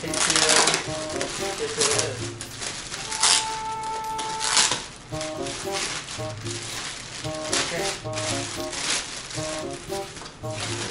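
A thin plastic bag crinkling and rustling in several loud, brief bursts as it is pulled and handled, over background music with a stepping melody and a regular bass note.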